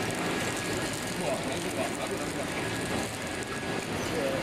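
Automatic pillow-type (flow-wrap) packing machine running steadily as it wraps face masks in plastic film, an even mechanical running noise with a faint steady high tone.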